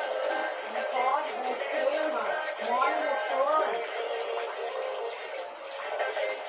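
An indistinct person's voice for a few seconds, over faint steady background music.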